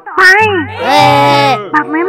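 A voice speaking Thai, with steady background music underneath.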